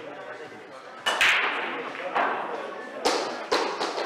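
Sharp clacks of pool balls striking each other: one about a second in, then three in quick succession near the end, over background voices.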